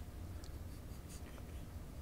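Quiet small-room tone: a steady low hum with a few faint, short scratchy ticks.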